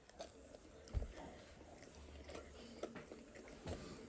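Two people chewing beef jerky: faint, scattered mouth clicks and chewing sounds, with a soft thump about a second in.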